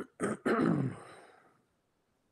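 A woman clearing her throat in three quick bursts, the last one loudest and drawn out, falling in pitch as it fades.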